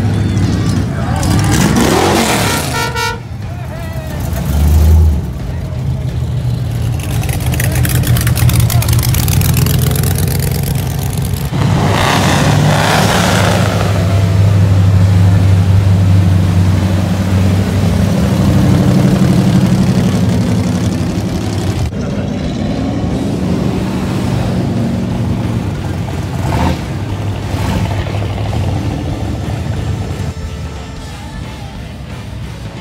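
Engines of classic cars, hot rods and custom trucks cruising slowly past one after another, the rumble swelling and fading as each goes by, with a brief loud low thump about five seconds in.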